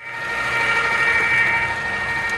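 Electric bucket-style ice cream maker running, its motor turning the canister in the ice-packed bucket to churn a batch: a steady whine made of several high tones. It fades in over the first half second.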